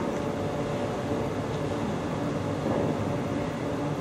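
Steady room noise with an even hum and hiss and no speech, through a live microphone and PA.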